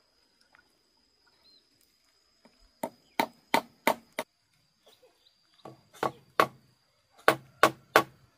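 Claw hammer driving nails into a wooden roof beam. After a quiet start, sharp blows come in three runs, about three a second: five, then three, then three.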